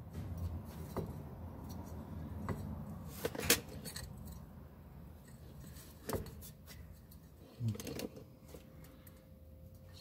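Scattered metallic clinks and knocks from a steel driveshaft half being handled and lifted into place under the car, the loudest about three and a half seconds in.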